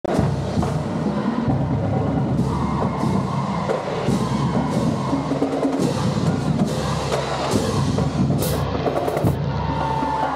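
High school marching drumline (snares, bass drums and cymbals) playing a steady cadence, echoing in a large gymnasium, with bright cymbal crashes near the end.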